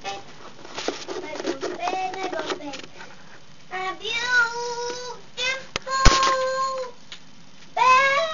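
A young girl singing a made-up song to herself, in phrases with long held notes. Two sharp knocks come a little before the end of one held note, about six seconds in.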